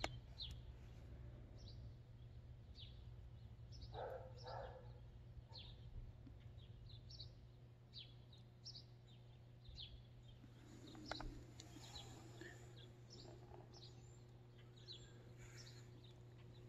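Quiet outdoor background with faint bird chirps: many short, falling chirps scattered throughout. A couple of slightly louder brief sounds come about four and eleven seconds in.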